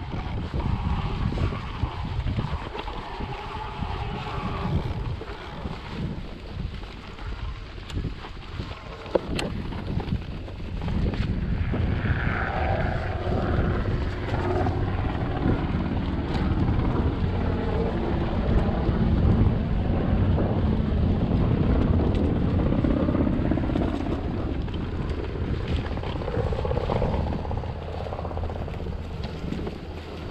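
Mountain bike descending a bumpy dirt singletrack: wind buffeting the microphone, tyre rumble on the ground, and scattered knocks and rattles from the bike over bumps, getting louder from about a third of the way in.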